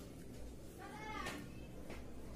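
A brief high-pitched call, about half a second long, a little under a second in, followed by two sharp clicks.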